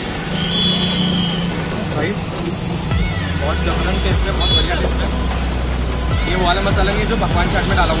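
Busy roadside street sound: a vehicle engine running low and steady close by from about three seconds in, under background chatter.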